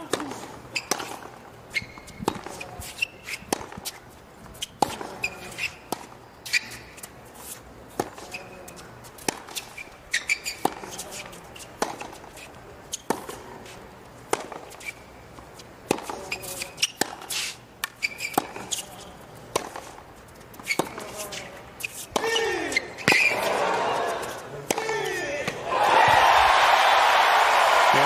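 Tennis ball struck back and forth by racquets in a long baseline rally, a sharp hit about every second. Near the end the crowd's voices rise during the closing exchange and then break into loud cheering and applause as the point is won.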